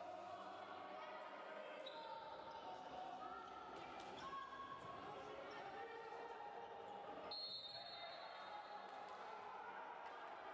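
A handball bouncing on a wooden sports-hall floor, with a few sharp knocks between about two and five seconds in and again near the end, under players' voices calling out.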